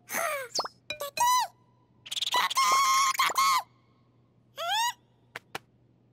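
Squeaky, wordless cartoon-character voices and pop-like sound effects. Quick high chirps arch up and down in pitch, with a longer chattering stretch in the middle and a single falling squeak after it. Two sharp clicks come near the end.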